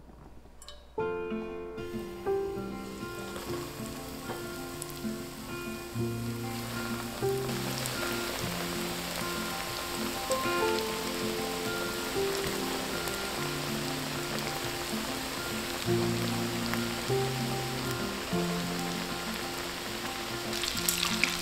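Instrumental background music with steady held notes begins about a second in. From around the middle, the sizzling hiss of breaded chicken nuggets frying in a pan of hot oil comes in and builds.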